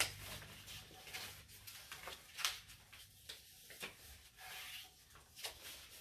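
Construction paper being folded and creased by hand, giving faint, scattered rustles and rubbing scrapes.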